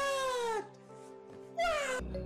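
Two drawn-out falling cries with a strong pitched tone: the first lasts about half a second, and the second starts near the end. Both sit over steady background music.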